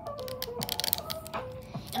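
Rapid light clicking and tapping on plastic, for about a second, as a plastic hairbrush is handled close to the microphone, over background music.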